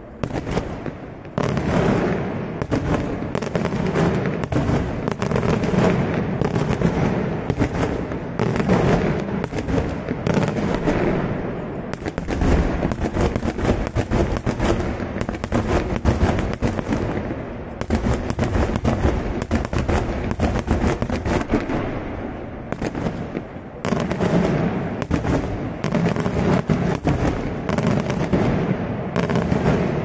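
Daytime fireworks going off in a dense, rapid barrage of bangs, several a second. It picks up sharply about a second and a half in, and eases briefly around the 22-second mark before building again.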